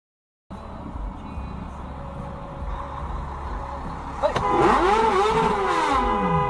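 Silent at first. Then a car's engine and road rumble heard from inside the cabin. About four seconds in there is a sharp knock, followed by a loud steady horn tone and a wavering squeal that rises and falls in pitch.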